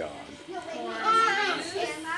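Young children's high-pitched voices talking, with no clear words.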